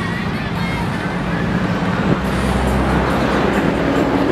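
Steady outdoor background noise with a low hum. A deeper rumble joins for about a second in the middle.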